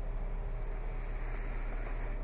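Steady low hum of a Jeep Wrangler's 3.6-litre Pentastar V6 idling, heard from inside the cabin.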